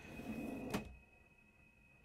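Oak-fronted kitchen drawer on metal runners being pushed shut, sliding faintly and ending in a single click about three quarters of a second in.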